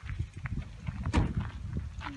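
Footsteps on gravelly ground, an uneven series of low thuds.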